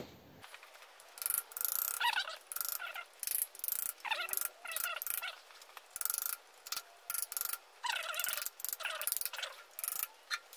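Socket ratchet clicking in quick repeated strokes, about two a second, starting about a second in, as the main bearing cap nuts on a flathead engine block are undone.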